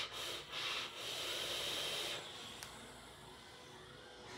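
Drag on the Wismec JayBo Machina mechanical mod's rebuildable dripping atomizer: faint hissing of air drawn through the atomizer in two short pulls, then a longer pull of about a second, fading after about two seconds.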